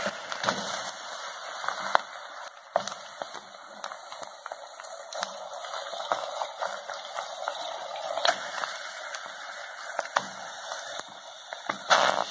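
Chopped raw chicken sizzling in a pot of hot melted sugar: a steady hiss with scattered crackles and pops.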